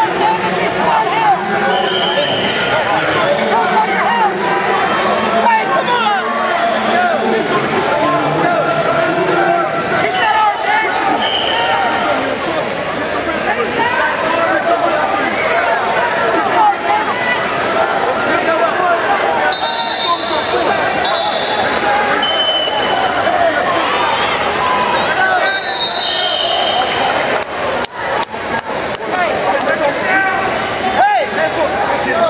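Many voices of spectators and coaches shouting and talking over one another throughout, with no single clear speaker. Near the end come a few short, sharp knocks.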